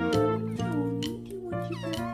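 Young tabby kitten meowing in several short, high mews over background music with a steady beat.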